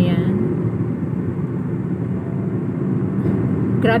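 Steady low road and engine rumble of a moving car, heard from inside the car.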